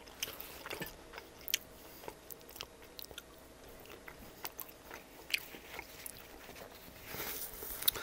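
Close-miked chewing of a mouthful of pizza slice topped with arugula and ranch: scattered soft crunches and wet mouth clicks, with a brief louder stretch near the end.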